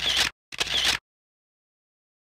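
Camera shutter sound effect: SLR-style shutter shots in quick succession, each about half a second long. One ends just after the start, and the next runs from about half a second to a second in.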